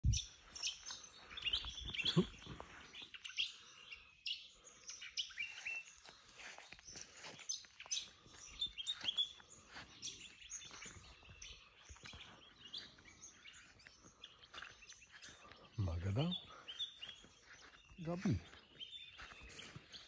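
Outdoor birdsong: many small birds chirping and calling, with short overlapping notes throughout.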